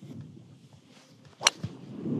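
A golf driver striking a ball off the tee: a single sharp impact about a second and a half in.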